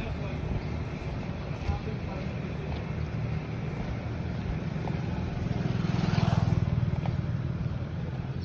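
Road traffic rumbling along the roadside, with a vehicle passing by and growing louder around six seconds in before fading.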